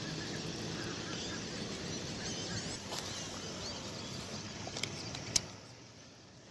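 Steady outdoor noise with small birds chirping faintly throughout and a few sharp clicks; the noise falls away to near quiet just before the end.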